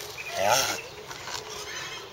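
Male African spurred (sulcata) tortoise giving its mating call while mounted on a female: one short, rising groan about half a second in.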